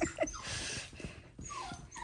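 Goldendoodle puppy whimpering softly, one short whimper just after the start and thin little squeaks near the end, with a soft rustle of fabric in between.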